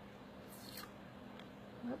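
Faint scrape of a hand twisting the over-tightened plastic lid of a casting-resin bottle, about half a second in and again more weakly later, over a low steady hum.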